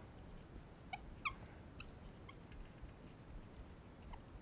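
Dry-erase marker squeaking faintly on a whiteboard while writing, a handful of short, high chirps a fraction of a second apart.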